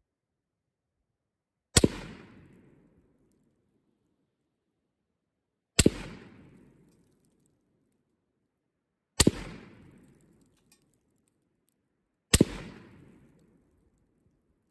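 Four single aimed rifle shots from a WBP Jack, a Polish AK-pattern rifle in 7.62×39, spaced three to four seconds apart, each a sharp crack followed by about a second of echoing decay.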